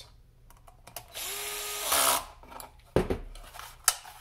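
DeWalt cordless screwdriver running for about a second, driving a screw into a holster belt clip, its faint whine rising slightly and louder as the screw seats. Two sharp knocks follow near the end.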